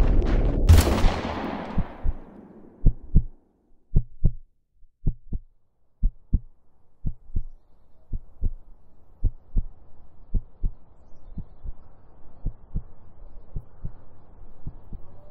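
A single pistol shot about a second in, its echo dying away over the next couple of seconds. Then a slow heartbeat sound effect: paired low beats about once a second, with a faint hum growing under them.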